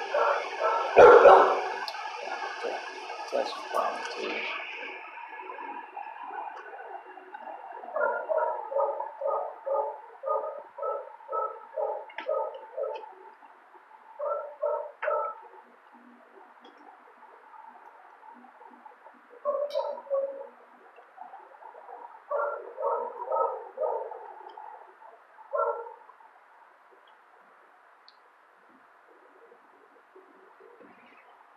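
A dog barking in runs of evenly spaced barks, about two a second, with pauses between the runs; two sharp knocks come right at the start.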